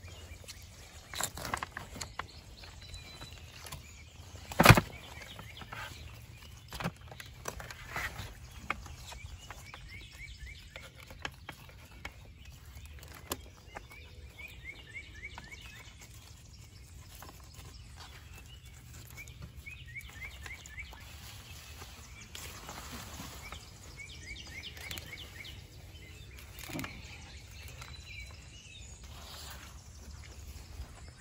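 Knife and hands working a fish on a wooden cutting board: scattered scrapes and taps, with one sharp knock about five seconds in. A bird sings short trills several times in the background over steady low background noise.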